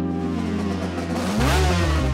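Two-stroke Suzuki sportbike engine running, with one rev that rises and falls back about one and a half seconds in.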